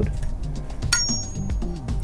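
A single sharp metallic clink with a brief high ring about a second in, as metal yo-yos knock together while being handled, over steady background music.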